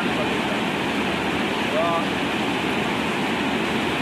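Steady rush of white water pouring over a river weir. A brief voice sound comes about halfway through.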